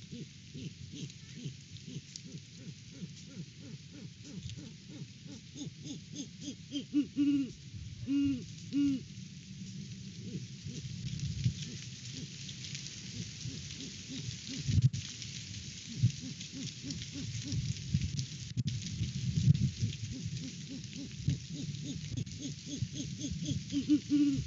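Great horned owl hooting: a run of deep hoots about seven to nine seconds in and again right at the end. Under them, strong gusty wind rumbles on the microphone and rustles the leaves, growing louder in the second half.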